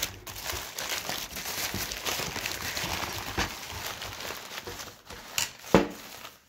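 Crumpled brown kraft packing paper and plastic wrap crinkling and rustling steadily as they are handled and pulled off a wrapped sword. Two sharp knocks come close together near the end, the second the loudest sound.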